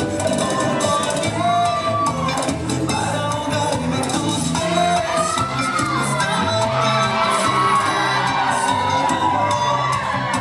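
Loud Latin dance music playing for a stage routine, with an audience cheering and whooping over it.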